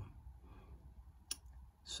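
Quiet room tone with a single short, sharp click a little past halfway through.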